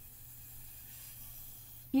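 Faint breath blown through a drinking straw, pushing wet alcohol ink across plastic Yupo paper, over a steady low hum.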